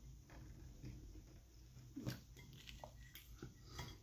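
A man faintly chewing a mouthful of fried chicken, with a couple of brief soft clicks about halfway through and near the end, over a low steady hum.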